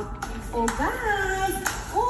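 A woman talking, with her voice rising and falling in long glides, over light background music, and a couple of sharp taps.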